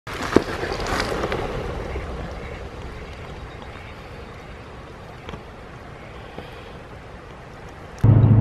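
Steady outdoor noise, loudest at first and slowly fading, with a sharp click about half a second in.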